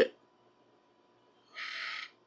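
A short breath, a soft even hiss about half a second long, begins about a second and a half in, shortly before the next words; the rest is silent.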